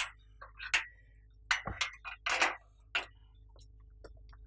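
Padlock and latch of a metal gate clinking and rattling as the gate is unlocked and opened: a quick series of sharp metallic clicks and clanks over about three seconds.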